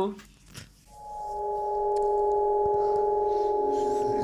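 A steady, held electronic tone made of several pitches together, fading in about a second in and then holding level without any change in pitch.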